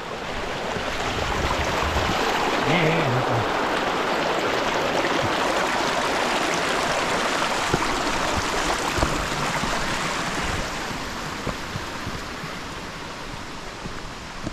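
Small mountain stream rushing and splashing over rocks, close by. It swells over the first couple of seconds and fades over the last few.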